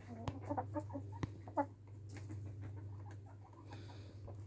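Faint short bird calls, several in the first second and a half, with a few light clicks over a steady low hum.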